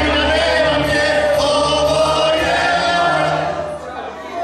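A group of voices singing together over music with a steady low bass, the kind of group song that goes with a circle dance. The sound dips briefly near the end.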